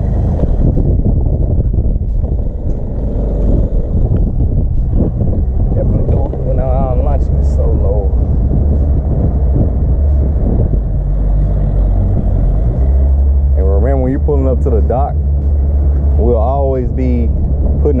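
Pontoon boat's outboard motor running steadily underway, a constant low rumble heard alongside wind on the microphone.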